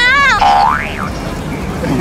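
A woman's high-pitched cry, followed by a quick sliding tone that sweeps up and back down like a boing sound effect.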